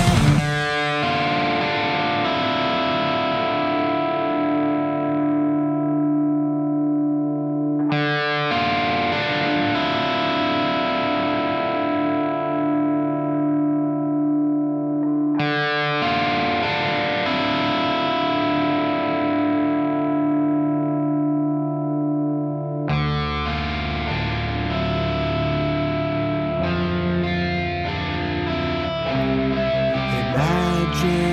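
Music: an electric guitar through effects plays long chords, each struck and left to ring out and fade, a new one about every eight seconds, after a loud full-band passage cuts off just after the start. A few seconds before the end a low bass comes in and the playing gets busier.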